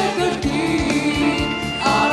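Live worship team of several vocalists singing a gospel song together, with instrumental backing and a steady low beat about twice a second.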